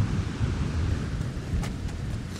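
Wind buffeting the camera microphone in a low, fluttering rumble, with surf washing on the shore behind it. A couple of short clicks come near the end.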